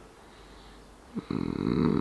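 A man's deep, creaky hum close to the microphone, with a rattling edge to it. It starts just over a second in, right after a short click, and the first second is quiet.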